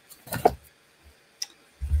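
A few small handling sounds on a craft desk: a brief soft rustle about a third of a second in, then a single sharp click a little past the middle, with a low bump near the end.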